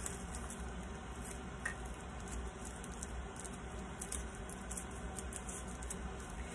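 Faint rustle and crackle of a thin paper napkin as fingers rub at its corner to find a second ply, over a low steady hum.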